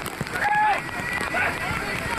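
Several people shouting and calling out, one long high call about half a second in, over the steady rush of fast-flowing floodwater.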